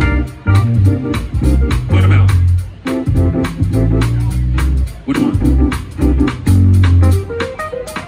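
Live band playing, with an electric bass guitar to the fore in loud, separate low notes over drum kit and keyboard.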